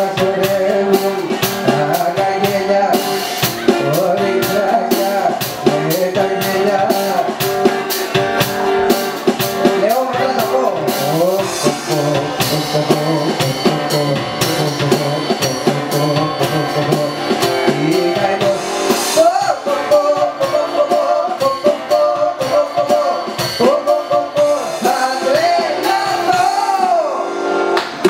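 A man sings a Greek song into a microphone, accompanied by a strummed acoustic guitar, with a steady beat running under them.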